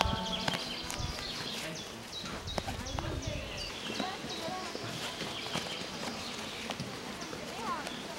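Birds at a common chaffinch nest calling with short, high notes repeated irregularly. A low rumble runs under the first few seconds.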